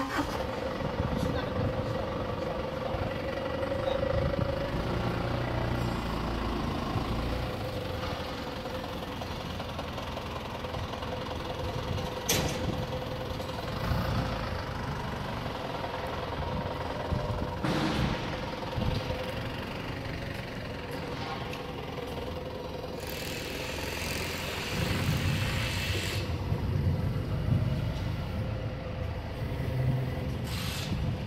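Steady mechanical hum with a constant tone over a low rumble, from running food-processing machinery. A few sharp clicks come partway through, and a burst of hissing comes about three-quarters of the way in.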